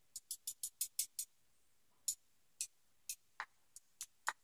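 Light metallic clicks of tweezers and small tools on lock pins as the pins are worked out of the chambers of a gutted padlock: a quick run of about six clicks in the first second, then single clicks spaced about half a second apart.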